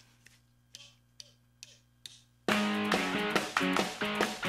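A few faint clicks in near quiet, then about halfway through a band starts playing loud and suddenly: the opening of the song, with guitar.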